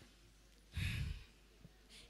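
A woman's single breath into a close handheld microphone, like a sigh, about a second in and lasting about half a second, with a low puff where the air hits the mic.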